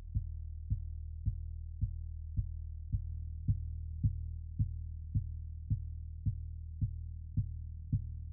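Reaktor Blocks software drum patch playing a steady kick-drum pulse on every beat at 108 BPM, about two thumps a second, over a sustained low bass drone. It sounds heavily muffled, with only the low end coming through.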